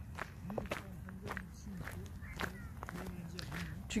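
Footsteps on a gravel track at a steady walking pace.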